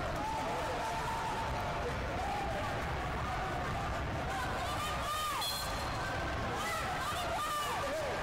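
Indistinct chatter of many voices filling a large hall, with a brief high squeak or whistle about five seconds in.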